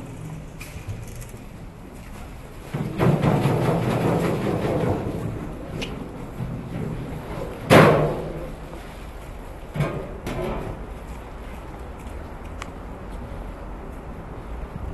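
Heavy exit doors of a metro vestibule: a loud rush of noise with a low hum for a couple of seconds as the doorway is passed, then a single sharp bang about eight seconds in, the loudest sound, as a door swings shut, and a smaller knock about two seconds later.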